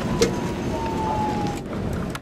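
Nissan Leaf Nismo RC electric race car launching from a standing start and pulling away, a thin whine that drifts slightly lower in pitch and fades, over a steady rush of tyre and wind noise.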